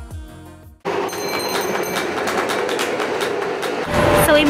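Acoustic guitar music that cuts off under a second in, followed by a steady, loud noisy rumble like a moving vehicle or street traffic, with a rapid run of high clicks and tones in its first second.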